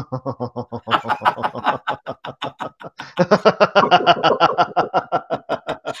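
Two men laughing on purpose in a laughter-yoga exercise, a rapid run of 'ha-ha' pulses at about seven or eight a second, growing louder and fuller about three seconds in.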